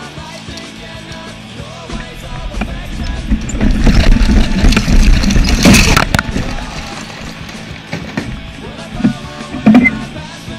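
Hard plastic wheels of a ride-on toy car rattling and scraping over pavement, building to a loud crash about six seconds in. A sharp knock comes near the end, all over rock music.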